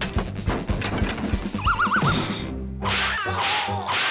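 Cartoon soundtrack: background music with a steady beat, a wobbling warble effect about halfway through, then loud whooshing bursts with falling squeals near the end.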